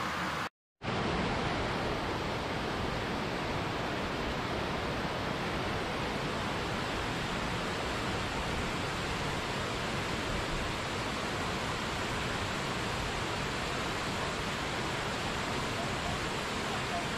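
Steady rush of falling water from a mountain waterfall and cascade, an even hiss without breaks, after a brief drop to silence about half a second in.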